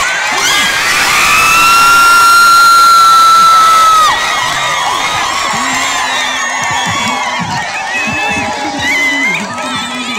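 Crowd of spectators cheering and shouting at a tug-of-war, children's voices among them. A single long high note is held for about three seconds and is the loudest sound, ending about four seconds in; men's voices call out in the second half.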